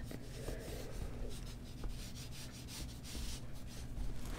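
Faint scratchy rubbing of a nearly dry paintbrush dragged in short strokes across cold-press watercolour paper.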